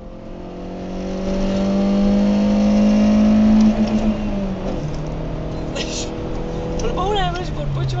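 Car engine heard from inside the cabin, pulling through a gear with its pitch and volume rising steadily for nearly four seconds. The pitch then drops as it shifts up, and it runs on steadily. A brief voice comes in near the end.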